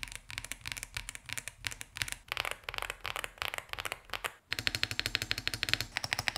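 Typing on a Cidoo V65 V2, a 65% aluminium gasket-mount mechanical keyboard with a PC plate, heavy foam and thick PBT keycaps: a somewhat thin keystroke sound with little thock. After a brief pause about four and a half seconds in, faster, more even keystrokes follow on a second 65% keyboard.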